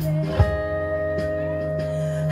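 Live blues-rock trio playing: electric guitar, bass guitar and drums. A long held note rings over the bass through most of it, with a single sharp drum hit about half a second in.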